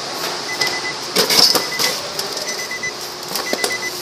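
Short, high electronic beeps at one steady pitch, repeating at uneven intervals, with a few sharp clicks and a rustle about a second in.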